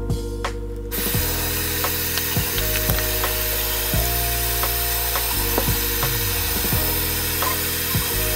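Bathroom sink tap running into the basin, a steady rushing hiss that starts suddenly about a second in, as hands are washed under it. Background music with a steady beat plays underneath.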